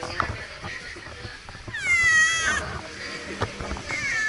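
A calico cat meows once near the middle, a call of just under a second that drops in pitch and then holds. A second meow begins right at the end.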